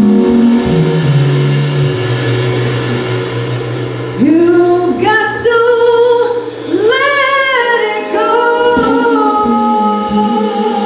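Live band with singing: a low note is held through the first few seconds, then a singer comes in about four seconds in with phrases that slide up and between notes over the accompaniment.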